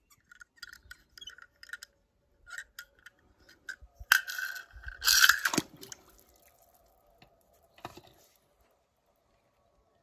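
Small die-cast toy car handled with light clicks, then dropped into a swimming pool, splashing about five seconds in.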